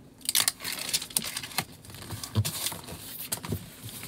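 Cardboard USPS Regional Rate shipping box being pressed shut and handled on a counter: irregular rustles, scrapes and light knocks of cardboard, with the box stuffed tight with clothing.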